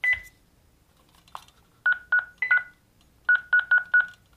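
Honeywell L5100 touchscreen alarm panel beeping at each key press as a 7-digit sensor serial number is keyed in: about nine short beeps in quick runs of two to four, most at one pitch and a few slightly higher.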